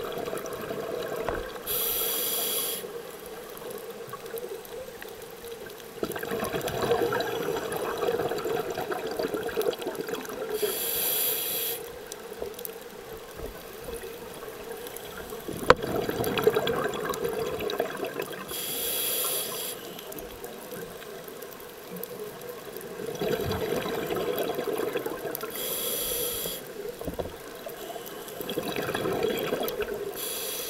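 Scuba regulator breathing heard underwater: a short hiss on each inhalation, then a few seconds of bubbling exhalation, four slow breaths in all. A steady hum runs underneath, and there is one sharp click about halfway through.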